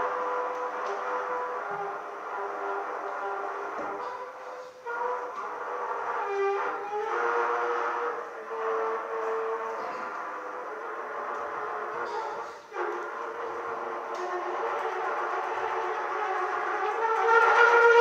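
Solo trumpet played in an improvised way: long held notes in the same middle register, with short breaks between phrases, getting louder near the end.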